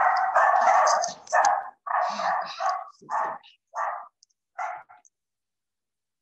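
A dog barking repeatedly, a quick run of loud barks that grow fainter and more spaced out before stopping about five seconds in.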